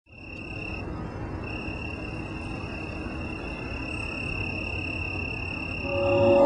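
A cricket trilling steadily at a high pitch, breaking off briefly about a second in, over a low rumble.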